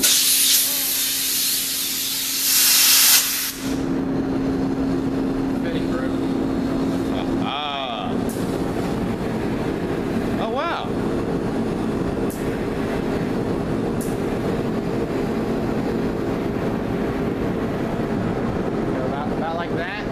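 Powder coating gun blowing compressed air in a loud hiss for the first three or four seconds, then a steady airy spray while it coats the part, over the spray booth's exhaust fan running with a steady hum.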